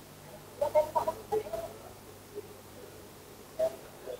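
Short bird calls picked up through an open microphone: a quick cluster of calls about a second in and one more near the end, over a faint low hum.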